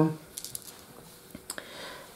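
A few faint, short handling clicks and light rustling, two near half a second in and two more around a second and a half in.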